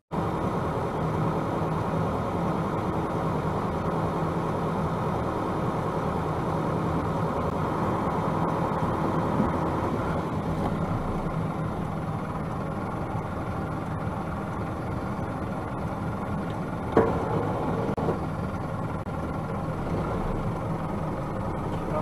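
Truck engine idling steadily while stopped at a light, heard from inside the cab. There is one sharp click about seventeen seconds in.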